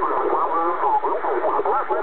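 Amateur-radio voice received in upper sideband on a Kenwood TS-690S transceiver tuned to the 10-metre band: narrow, tinny, continuous talk with a faint hiss behind it.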